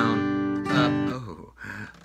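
Steel-string acoustic guitar strummed on a G chord: the chord is ringing at the start, a second strum comes about three-quarters of a second in, and the sound dies away about a second and a half in. The strum pattern slips, a mistake where a half note should have been held.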